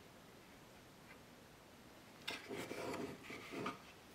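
Wooden pieces being handled on a wooden workbench: about a second and a half of wood rubbing and sliding on wood, with a few light knocks, starting just past halfway.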